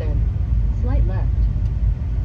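Steady low rumble of engine and road noise inside a truck's cab while it drives, towing a boat trailer.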